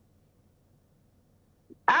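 Near silence in a pause of conversation, broken near the end when a woman starts to answer ("I've").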